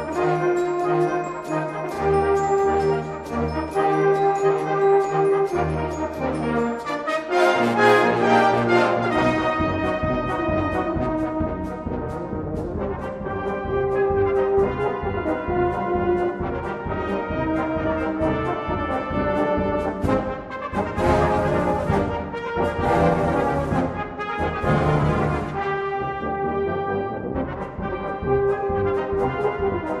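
Salvation Army brass band of cornets, horns, euphoniums, trombones and tubas playing: held chords over a bass note repeated about every two seconds, then fuller, busier playing from about seven seconds in, with a high shimmering wash for a few seconds past the two-thirds mark.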